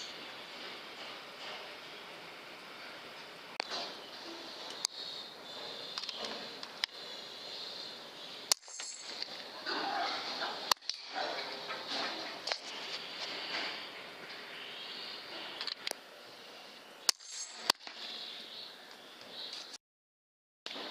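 Sharp cracks of a .22 PCP air rifle firing over a steady background hiss, with the loudest shots about a third of the way in, around halfway and near the end.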